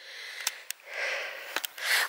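A person breathing close to the microphone: a soft hiss that swells and fades about a second in, with a few small clicks.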